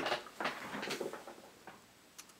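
Soft, uneven rustling with small clicks and scrapes as a trading card in a clear plastic holder is handled among papers on a desk. It fades out near the end.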